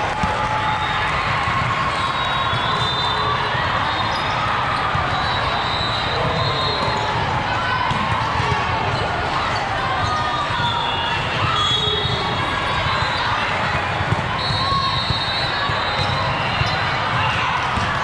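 Hubbub of a large, echoing sports hall during volleyball play: many overlapping voices, with the thuds of volleyballs being struck and bouncing on the court floor and a few sharper knocks near the end.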